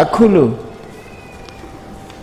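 A man's voice speaking: one short drawn-out syllable whose pitch falls, then a pause with only faint room hum.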